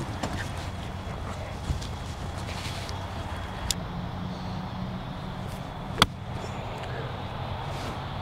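An iron striking a golf ball off fairway turf: one sharp click about six seconds in, over a steady low background hum.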